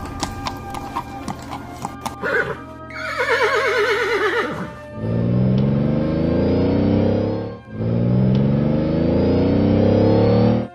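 Horse sound effects over background music: a few hoof clip-clops, then a horse whinnying with a wavering pitch about three to five seconds in. After that comes a car engine pulling away, rising in pitch twice with a short break between.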